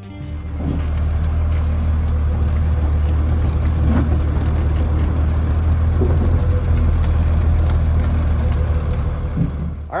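Cab interior sound of a 1972 Ford F350 with a twelve-valve Cummins diesel on the move: a loud, steady low engine drone with road noise over it, easing off slightly just before the end.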